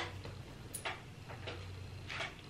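A few faint, short clicks over a low steady hum in an otherwise quiet room.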